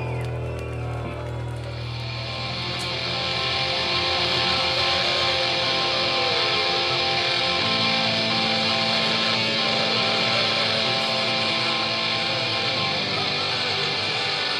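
Distorted electric guitar notes held and ringing out right after the band's final song stops, over a steady, bright wash of amplified distortion. A low sustained note gives way to a higher one about halfway through, which stops shortly before the end.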